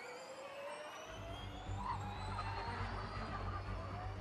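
Formula E car's electric drivetrain whine, several tones climbing slowly in pitch together as the car accelerates. Low background music comes in about a second in.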